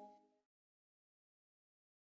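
Near silence: the faint last ringing tones of the outro music die away about half a second in, then dead silence.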